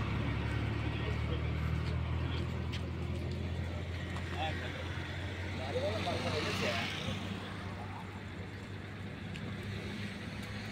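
A motor vehicle's engine running with a steady low hum that fades after about seven seconds, with people's voices in the background around the middle.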